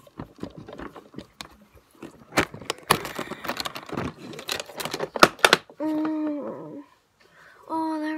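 Plastic lipstick tubes and makeup cases clicking and rattling against each other as they are sorted through in a large makeup box, for about six seconds. Near the end a voice hums two short, steady, held notes, the second starting just before the close.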